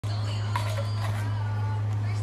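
A steady low hum, with faint voices and two light clicks about half a second and a second in.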